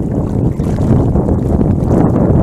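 Loud, steady low rumble of wind buffeting a microphone held at the surface of a choppy sea, with water sloshing close by.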